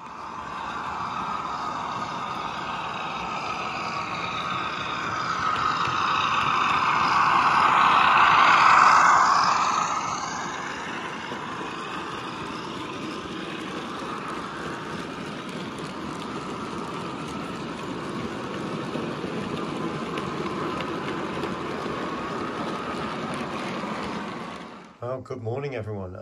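A train running on rails, swelling to a loud pass-by about nine seconds in, then a steady rumble that stops shortly before the end.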